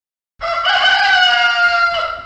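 Rooster crowing as a morning wake-up sound effect: one long crow that starts just under half a second in and holds a nearly steady pitch for almost two seconds.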